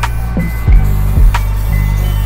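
Background music: a beat with deep sustained bass notes and regular drum hits.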